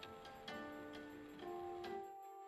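Guqin, a seven-string Chinese zither, being plucked: four single notes, each ringing on, the first at the start and the last near the end.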